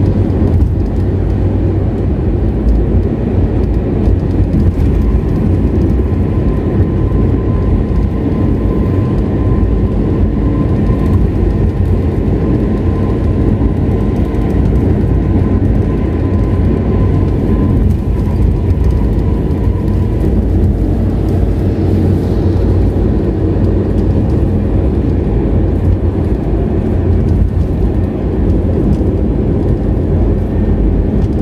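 Steady road noise of a car cruising on an asphalt toll road, heard from inside the cabin: an even low rumble of tyres and engine. A faint steady whine sits on top of it for several seconds in the middle.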